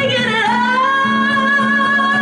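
Live female vocal over a strummed acoustic string instrument. About half a second in, the voice slides up into a long, steady high note.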